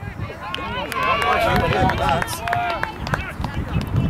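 Several voices shouting and calling over one another on a football pitch, with a few sharp knocks mixed in.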